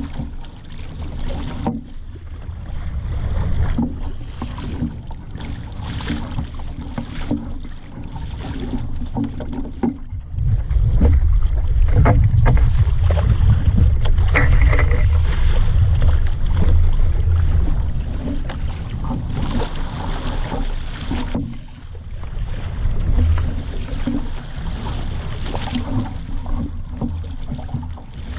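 Wind rumbling on the microphone of a camera mounted on a small sailing dinghy under way, with water washing along the hull and occasional clicks from the rigging. The rumble grows louder for about ten seconds in the middle, then eases.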